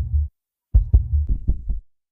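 A deep bass throb cut into quick beats, about five a second. It drops out for about half a second, comes back, then cuts off suddenly near the end.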